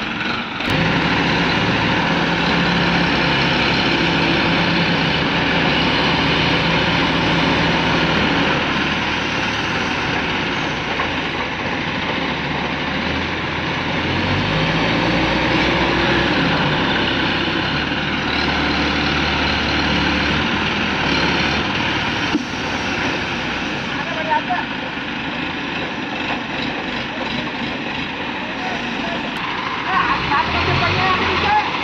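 Diesel engines of two ACE 12XW hydra cranes running under load during a lift, with the engine note changing about halfway through as the throttle varies.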